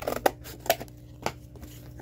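Scissors cutting through cardboard: a few separate snips, the loudest just after the start and the last about a second and a quarter in.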